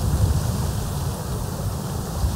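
Wind buffeting the camera microphone: an uneven low rumble that comes and goes in gusts.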